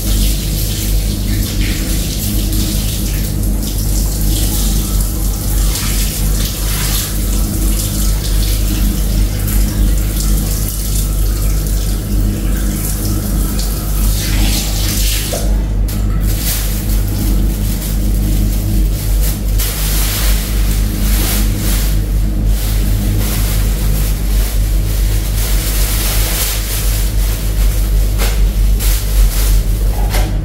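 Water splashing in a sink as a cloth is washed and wrung out by hand, under background music with steady low sustained tones.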